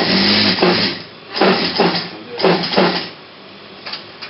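Industrial sewing machine stitching cotton shirt fabric in three short runs: the first about a second long, then two shorter runs with pauses between. The machine's rattle sits over a steady low motor hum.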